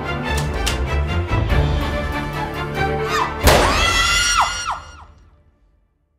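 Tense film score with a driving beat and sharp percussive hits. About three and a half seconds in comes one loud crash-like impact with ringing tones that bend downward, then everything fades to near silence near the end.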